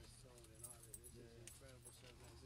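Near silence: faint, distant talking, with a few light clicks and a low hum.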